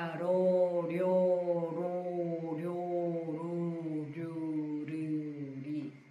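A woman's voice intoning a string of syllables on one steady, held pitch as a vocal (발성) warm-up drill, about one syllable every 0.8 seconds, breaking off just before the end.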